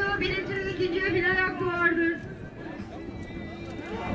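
A voice in long, drawn-out sung phrases for about two seconds, then fading into quieter background sound.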